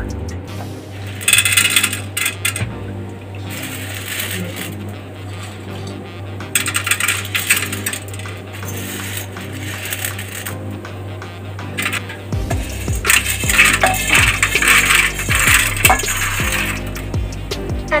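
Dry popcorn kernels rattling and scraping against a steel pan as they are scooped and stirred with a metal spoon, in three spells of a few seconds each.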